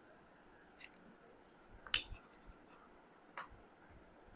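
Faint light clicks and taps of a deck of tarot cards being handled and set down on a marble tabletop, the sharpest about two seconds in and another about three and a half seconds in.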